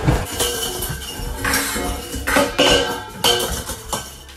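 Several sharp metallic clinks and clatters, each with a brief ring, spread through the few seconds.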